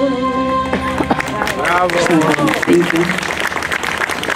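A female singer's held final note, wavering with vibrato over steady accompaniment, ends a little under a second in. Audience applause and clapping follow, with voices over it.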